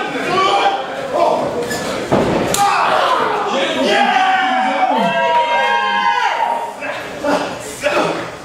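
Sharp impacts of wrestlers' strikes and bodies hitting in the ring corner, a few seconds apart, the loudest about two and a half seconds in, with people shouting and yelling long calls in the middle.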